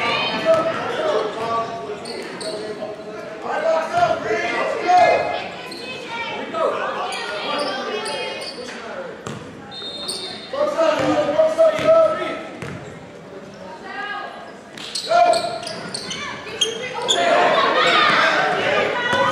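Basketball bouncing on a hardwood gym floor during a youth game, with indistinct voices of players and spectators echoing in the large hall. A short, high whistle sounds about halfway through.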